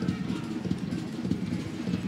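Stadium crowd ambience during live football play: a steady low rumble of spectators' voices and noise from the stands.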